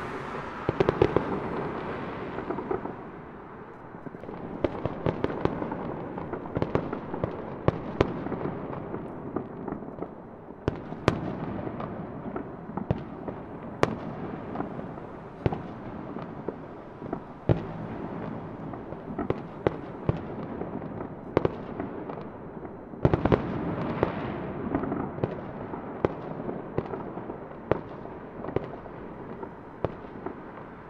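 Fireworks going off: a dense, continuous crackle of sharp pops over a low haze of noise. Louder clusters of bursts come about a second in and again about three-quarters of the way through.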